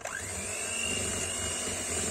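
Electric hand mixer switched on, its motor starting with a quickly rising whine and then running at a steady speed as the beaters whip sweetened cream in a glass bowl.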